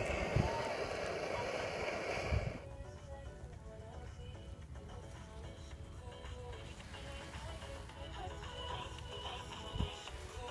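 Wind buffeting the microphone for the first two and a half seconds, then faint music from a radio broadcast playing quietly.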